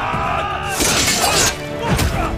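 Sword-fight sound effects over dramatic background music: a metallic clash and scrape of blades, loudest about a second in, with fighters' shouts.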